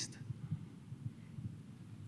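A pause in speech filled with faint, irregular low thumps over a low hum, picked up through a handheld microphone on stage.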